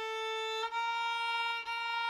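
Solo violin bowing steady, even notes: the tail of a held A, then two B-flats played with a low first finger on the A string, each about a second long. There is a short break at each bow change.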